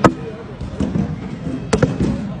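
Cornhole bags landing on a wooden cornhole board: a sharp thud right at the start and a quick double thud about three quarters of the way through, over background chatter in the hall.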